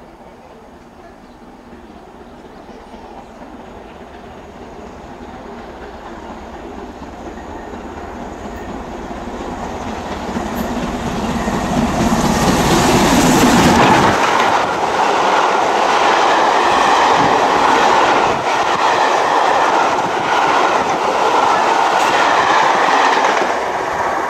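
LMS Black 5 two-cylinder steam locomotive and its train passing. The sound grows steadily louder as the engine approaches and is loudest about 13 seconds in as it goes by. The coaches then roll past with repeated clicks of wheels over rail joints.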